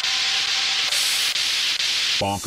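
White-noise sweep effect in an electronic dance track: a steady hiss sitting in the upper range, with the bassline and drums dropped out.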